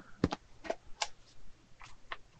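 About five light clicks and taps as a silicone soap box is handled and opened, the sharpest about a quarter second in.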